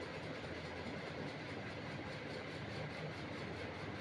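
Steady, low background noise with a faint hum and no distinct events: room tone.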